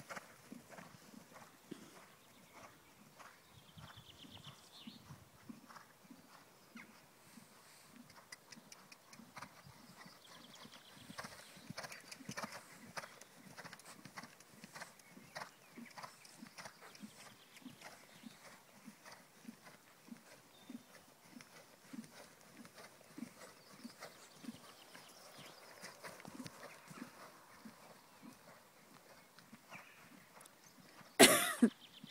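Faint, irregular knocks and clicks, about one or two a second, with a brief high chirp a few times.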